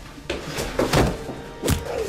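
Several heavy thuds, about four in two seconds, each with a low falling boom, over dramatic film music.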